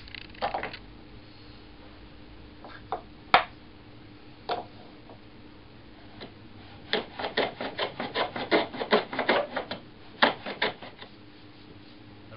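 Rider No. 62 low-angle jack plane on a shooting board: a few single knocks of wood and metal as the work is set in place, one sharp knock louder than the rest. Then a quick run of short planing strokes, about four a second, scraping along the wood for nearly four seconds.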